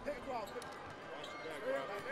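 The sound of a wheelchair basketball game in a gym, heard at a low level: a ball bouncing on the court and players' scattered shouts and calls.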